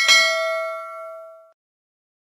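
Bell-chime sound effect: a single ding that rings out and fades away by about a second and a half in.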